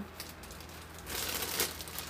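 Packaging crinkling as it is handled, a rustling burst about a second in that lasts most of a second.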